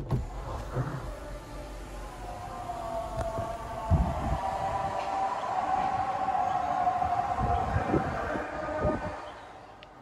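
Electric motor of a Volkswagen Tiguan Allspace's panoramic glass sunroof running as the glass panel tilts up and slides open: a steady whine, with a knock about four seconds in, fading out near the end.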